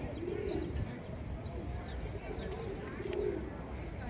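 Pigeons cooing in several low, wavering phrases, with short high chirps of small birds over them.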